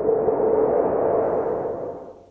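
A transition sound effect on a title card: a hushy swell with a steady hum-like tone in it, fading in, holding, and dying away near the end.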